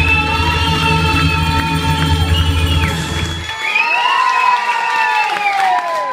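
Recorded song ending on a long held sung note over a heavy bass backing. The backing cuts off about three and a half seconds in, leaving a crowd cheering with loud gliding whoops.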